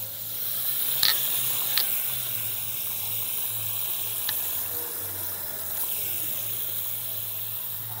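Tap water running steadily from a washbasin faucet as someone drinks straight from the stream, with three short clicks in the first half.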